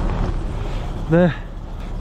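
Steady low outdoor rumble with a hiss behind it, which carries on under a man's short spoken word about a second in.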